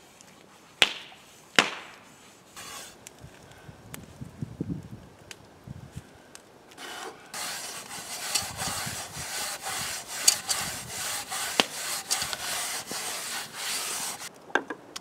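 Two sharp knocks about a second apart near the start, then from about halfway a steady rasping scrub: a hand scouring rust from the inside of a rusty cast-iron Dutch oven holding soapy water.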